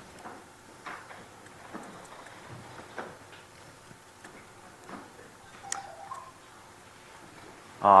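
Laptop keyboard being typed on: sparse, faint key clicks in short runs.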